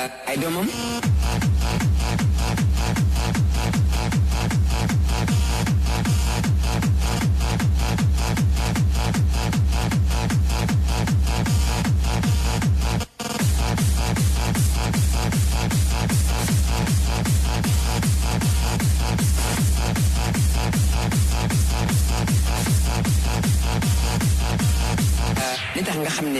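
Hardstyle dance music from a DJ set: a heavy kick drum pounds out a steady beat under synth lines. The beat cuts out for a moment about halfway through, then stops just before the end.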